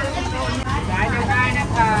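Voices talking over a steady low hum and a background of market noise.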